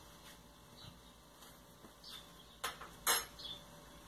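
Kitchenware being handled: two short sharp clinks about half a second apart near the end, in an otherwise quiet room.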